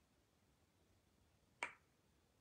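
Near silence, broken by a single sharp click about one and a half seconds in.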